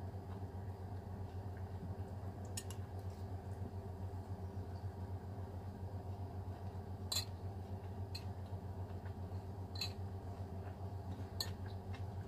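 A metal spoon clicks against a ceramic bowl about five times, a few seconds apart, as a meal is eaten, over a steady low hum.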